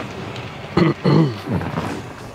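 A man's voice in a few short, indistinct phrases over steady background noise, loudest in the second half.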